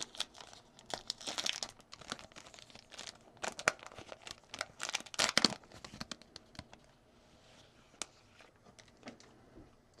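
A shiny foil trading-card pack wrapper being torn open and crinkled in quick crackly bursts for about the first six seconds. It then goes quieter, with a few light clicks.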